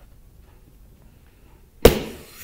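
A hand patting a soft plastic colour-changing night light gives a single sharp thump near the end, the tap that switches its colour; low room noise before it.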